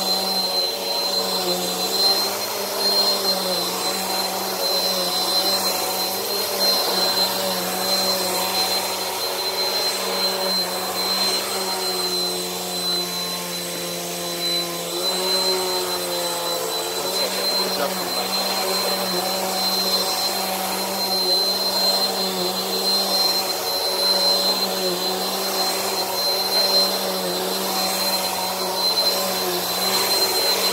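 Bissell PowerForce Helix upright vacuum running while it is pushed over carpet: a steady motor hum with a high whine on top. About halfway through, the motor's pitch sags for a few seconds, then comes back up.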